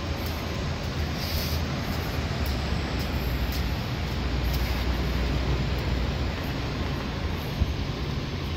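Steady outdoor background of distant city traffic: a low, uneven rumble with a hiss above it, partly wind buffeting the microphone.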